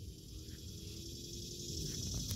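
A steady high-pitched insect chorus over a low rumble on the microphone, with a faint hum in the middle.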